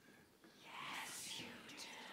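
Faint breathy whisper from an actor on stage, lasting about a second and a half.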